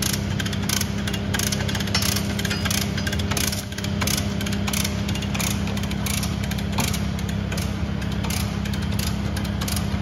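Mini digger's diesel engine running steadily, with irregular sharp metallic clicking over it from the lever chain hoist and chain as a new rubber track is pulled on.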